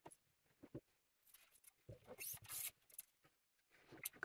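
Near silence with a few faint clicks and a brief scratchy rustle about two seconds in: a new steel guitar string being handled and drawn along the neck of a Telecaster.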